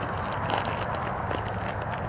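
Footsteps on an asphalt driveway scattered with pine needles, a few faint light steps over a steady outdoor background hiss.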